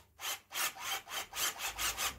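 Cordless drill run with its chuck held back by hand against the drill's torque, giving a rough rasping rhythm of about five pulses a second.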